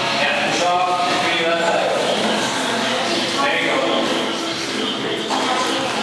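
Indistinct talking from people nearby, in short stretches, over a steady background noise.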